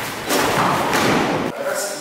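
An aikido partner thrown onto the floor mat: a thud and a noisy rush lasting about a second, cut off abruptly.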